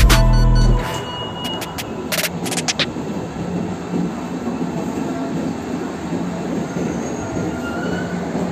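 Background music cuts off under a second in, leaving metro station platform noise: a subway train running steadily, with a cluster of sharp clicks about two to three seconds in.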